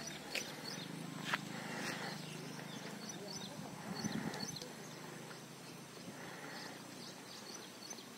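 Outdoor rural ambience: small birds chirping in short high notes on and off, over a low steady hum.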